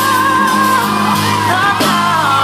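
A male soul singer holds a long, wavering high note, then runs through a quick flurry of notes near the end. A live neo-soul band plays under him.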